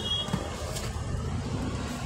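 Steady low rumble of road traffic and vehicle engines.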